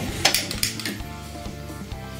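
A few sharp clicks in the first second as a long stick lighter lights a gas stove burner, over steady background music.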